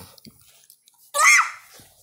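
A young child's brief high-pitched vocal squeal a little past a second in, falling in pitch.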